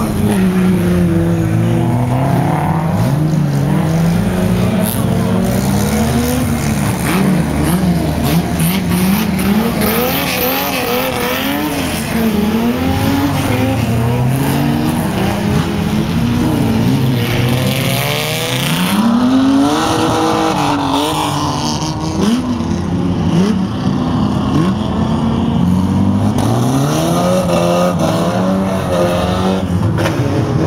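Banger racing car engines running on the oval, loud and continuous. Their pitch rises and falls again and again as the cars rev and pass.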